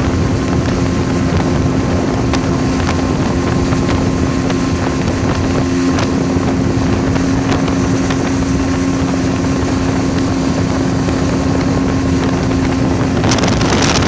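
Towing motorboat's engine running steadily at speed, a constant hum, with wind buffeting the microphone.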